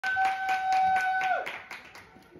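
Rhythmic hand clapping, about four claps a second. A single held high note sounds over it, then sags in pitch and fades out about a second and a half in.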